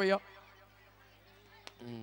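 A man's chanted mantra line ends just after the start, followed by a quiet pause with a single sharp click about a second and a half in, then a man's voice starting near the end.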